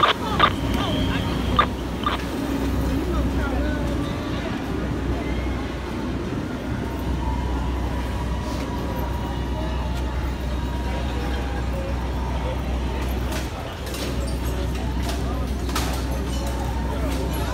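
Steady low engine drone of fire apparatus running, with indistinct voices over it and a few short clicks within the first two seconds.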